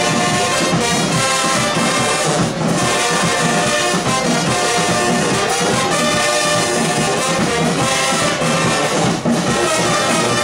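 High school marching band playing a loud, continuous tune, its brass section with sousaphones sounding together.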